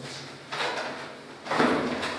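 Chalk writing on a blackboard: two short scratchy strokes, the second louder, near the end.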